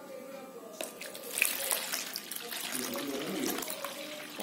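Water pouring from a plastic bottle into a plastic container, starting about a second in and running steadily.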